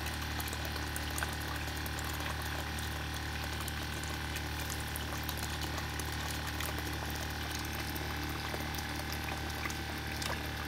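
Small 12-volt pump running steadily, circulating Evapo-Rust solution through a hose and pouring it back into a stainless tank from a brass elbow, the liquid splashing into the bath over a constant low hum.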